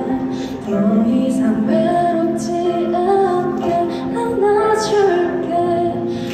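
A teenage girl singing a slow Korean ballad into a handheld microphone, holding long notes that glide between pitches, over a soft musical accompaniment.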